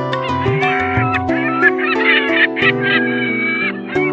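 Background music with plucked, guitar-like notes, over a flock of black-headed gulls calling: many overlapping wavering calls from shortly after the start until near the end.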